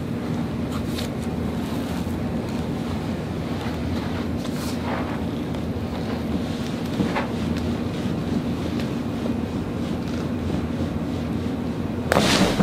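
Steady background hum and hiss, with a few faint short rustles or clicks.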